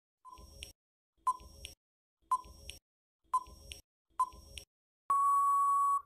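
Quiz countdown-timer sound effect: five short ticks about a second apart, then a steady beep about a second long marking time out.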